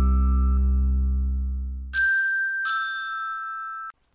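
Music ending: a held chord fades out, then two bright chime notes sound about three-quarters of a second apart and ring on until they are cut off abruptly just before the end.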